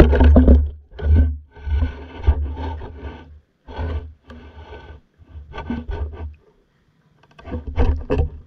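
Muffled rumbling and scraping from an underwater camera moving in the water, its housing rubbing and bumping. It comes in irregular bursts about a second apart, loudest at the start, with a short lull near the end.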